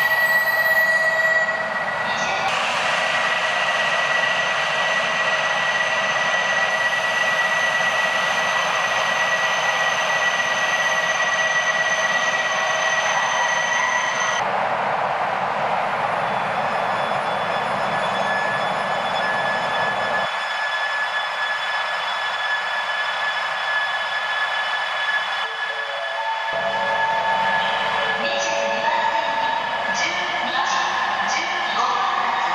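E3 series Shinkansen train standing at a station platform, giving a steady high whine over a constant rushing hum. The sound changes abruptly a few times, and a few short tones come in near the end.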